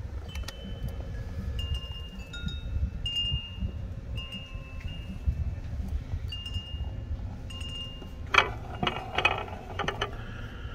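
Wind chimes ringing on and off, a few clear tones at different pitches sounding and dying away, over a steady low rumble. A couple of short rustling bursts come near the end.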